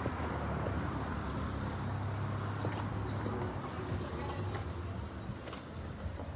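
Street traffic: a motor vehicle running nearby, with a steady low hum that is strongest for the first three seconds and then eases, over general street noise, and a thin high whine at the start and again briefly near the end.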